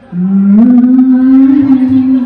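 A man singing one long held note into a handheld microphone: the note slides up near the start and then holds steady.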